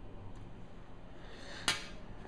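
One sharp click near the end, with a short rustle leading into it, as hands take hold of a camera lens.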